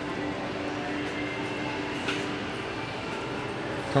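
Steady airport-terminal room tone: a continuous hum with a faint click about two seconds in.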